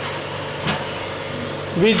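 A steady machine hum, with a short knock about two-thirds of a second in; a man's voice begins near the end.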